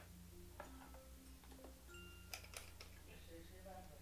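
Very faint background music of short, soft mallet-like notes at changing pitches, with a few light clicks about half a second in and again about two and a half seconds in.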